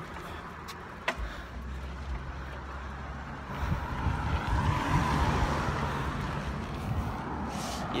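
Wind rumbling on the microphone and rolling noise during a bicycle ride, swelling around the middle, with one sharp click about a second in.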